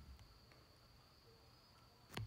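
Near silence: room tone with a faint, steady high-pitched tone and a faint soft thump at the start.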